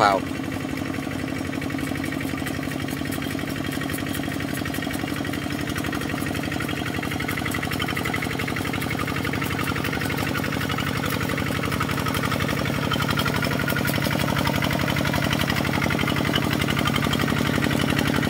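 Single-cylinder diesel engine of a two-wheel walking tractor running steadily under load as it drags a leveling board through flooded paddy mud. It grows gradually louder toward the end as the tractor comes closer.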